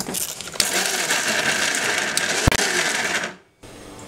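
Electric mixer grinder running with its small steel chutney jar, grinding dry garlic chutney with a gritty rattle. It starts about half a second in, runs steadily for about two and a half seconds, then is switched off and dies away.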